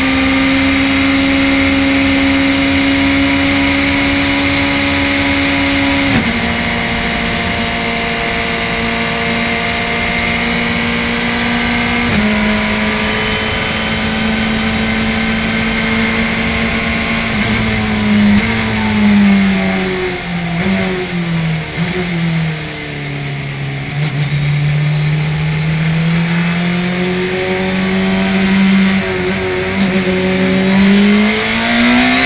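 Onboard sound of a Radical SR1 race car's motorcycle-derived four-cylinder engine at high revs. It holds a steady pitch in each gear, dropping suddenly with upshifts about six and twelve seconds in. Later it falls and rises in steps as the car brakes and downshifts, then climbs as it accelerates again near the end, over steady wind and road noise.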